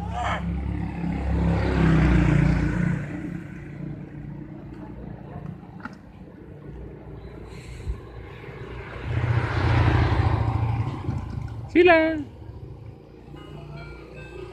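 Two motor vehicles passing by on the street, each swelling and fading over a few seconds: one about two seconds in, the other about ten seconds in. A short high voice sounds near the end.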